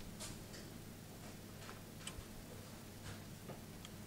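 Near-quiet room tone: a steady low hum with faint, irregular small clicks scattered through it.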